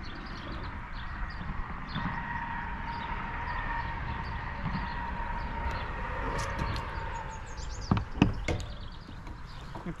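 Fishing reel being cranked with a steady whine as a small freshwater drum is reeled in, followed by a few sharp knocks near the end as the fish comes aboard the kayak.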